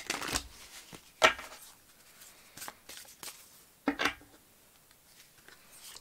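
Tarot cards being handled and laid down on a table: short crisp papery snaps and slides of card stock, one right at the start, the loudest about a second in, another about four seconds in, with faint rustles between.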